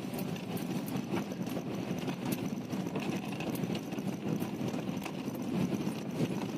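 Car tyres rolling over a rough gravel-and-stone dirt track, heard from inside the cabin: a steady low rumble with irregular clicks and pops of stones under the tyres.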